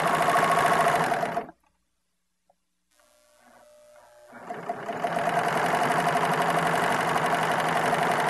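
A three-thread serger sewing a rolled hem, running fast with a rapid, even stitching rhythm. It cuts off about a second and a half in, then after a short silence starts again gradually, building up to full speed and running steadily.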